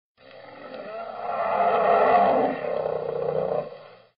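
A large animal's roar played as a sound effect: one long roar that swells to its loudest about two seconds in, then dies away near the end.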